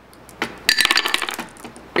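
Glass marbles clattering and clinking onto a marble machine's xylophone bars: one click about half a second in, then a quick dense run of hits lasting about half a second that trails off. This is a counterweighted bucket tipping and dumping its load of marbles.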